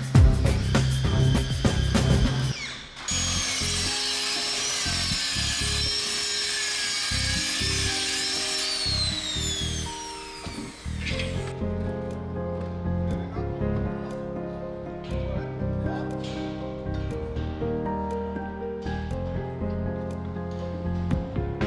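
Hand-held electric circular saw on a guide rail running and cutting through a panel for about eight seconds, its whine falling as the blade winds down before it cuts off. Background music with a beat plays throughout.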